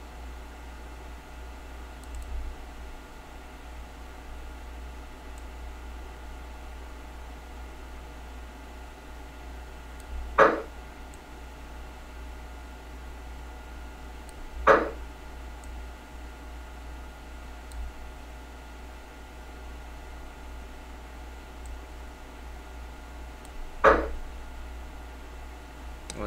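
Steady low hum of room tone, broken by three short, sharp clicks about 10, 15 and 24 seconds in.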